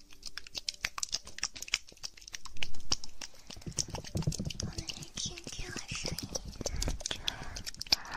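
Close-miked ASMR triggers: a quick, irregular run of small clicks and taps, growing heavier and denser, with lower knocks and rustling, from about two and a half seconds in.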